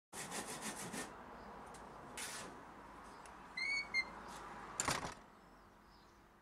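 Hand saw cutting wood: a quick run of about six short rasping strokes, then single strokes about two and five seconds in. A brief high squeak sounds in between, about three and a half seconds in.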